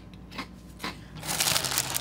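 Crunching of dry sweetened corn cereal being chewed: a few short crisp crunches, then a louder crackly stretch near the end.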